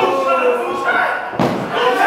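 Voices shouting around a pro wrestling ring, broken by a sharp thud on the ring canvas at the start and another about one and a half seconds in.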